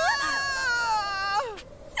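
A high-pitched female cartoon voice crying out in one drawn-out wail for about a second and a half, ending abruptly, with a short yelp near the end.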